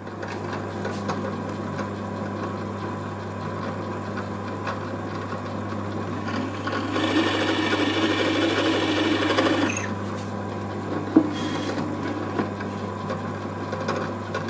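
Drill press motor running with a steady low hum while its bit bores into a walnut board; the cutting noise swells for a few seconds a little past halfway as the bit bites, then eases. A single sharp click follows a little later.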